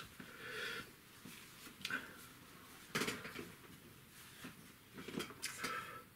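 Quiet room with faint handling noises: a few short knocks and taps, one about three seconds in and a couple more near the end, as a paintbrush is picked up and worked on an oil palette.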